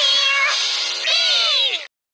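High-pitched, pitch-shifted singing from a children's TV song, ending in a few falling vocal glides that sound cat-like. It cuts off suddenly just before the end into dead silence.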